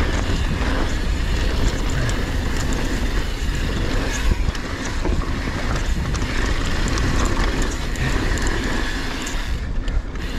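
Wind rushing over an action-camera microphone and mountain bike tyres rolling over a dirt and gravel trail at speed, with the occasional click and rattle from the bike over bumps.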